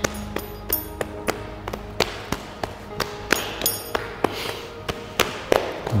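Hands tapping and patting the thighs and shins in a string of light, irregular slaps, about three or four a second, over soft background music with held tones.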